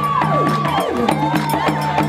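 Ensemble of djembe-style hand drums playing a fast dance rhythm. A long high held note slides steeply down in pitch about half a second in.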